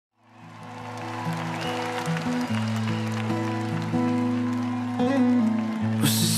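Live music fading in: an instrumental intro of sustained, held chords that change every second or so, with an audience applauding and cheering underneath.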